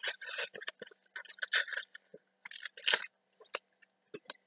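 Foil Yu-Gi-Oh! booster pack wrapper crinkling in the hands as it is opened, in irregular short rustles with a few sharp clicks.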